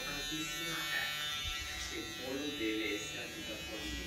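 Electric hair clippers buzzing steadily as they run through a young boy's short hair, with a soft voice partway through.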